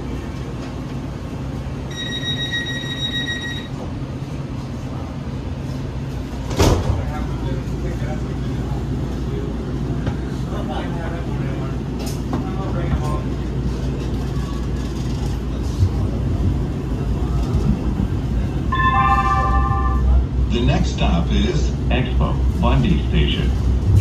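LA Metro light-rail car at a station: the door-closing warning tone sounds steadily for about a second and a half, and then the doors shut with a sharp knock. The train pulls away with a steady low rumble of motors and wheels that grows louder toward the end, and near the end a short chime and the automated announcement begin.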